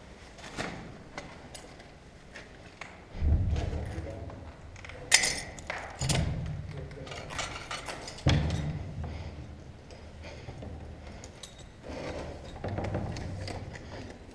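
Handling and climbing noise at a smashed window: several heavy thuds and small knocks, with one sharp clink of broken glass about five seconds in.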